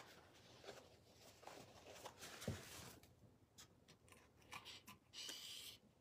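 Faint rustling and crinkling of thin collage paper being handled and pressed onto a wooden birdhouse, with a brief, louder crinkle near the end.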